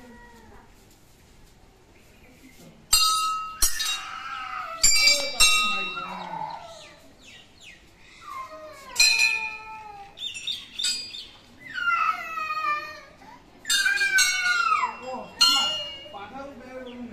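Hanging brass temple bells struck by hand one after another, each a sharp clang that rings on. Two strikes come close together about three seconds in and two more about five seconds in, with further strikes near nine, fourteen and fifteen and a half seconds.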